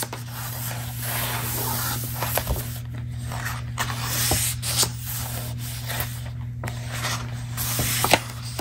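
Paper pages of a book being rubbed and handled: continuous rustling with scattered sharp crinkles and taps.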